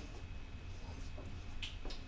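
A few faint, sharp clicks over a steady low room hum, the clearest click near the end.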